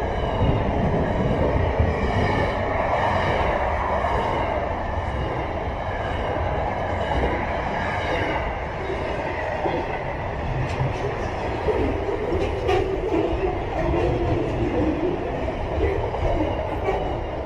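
Freight train's container wagons rolling past: a steady rumble of steel wheels on rail, with faint high squealing tones and a few scattered clicks from the wheels over the joints.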